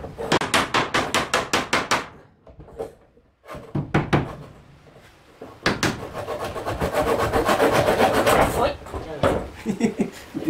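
A small hammer tapping on the wooden window frame in quick runs of light strikes. The first run lasts about two seconds. After a few scattered taps, a denser, faster run follows about six seconds in and lasts nearly three seconds.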